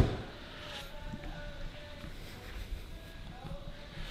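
A car's rear door shut with a single solid thump, followed by faint background noise as the camera moves to the boot.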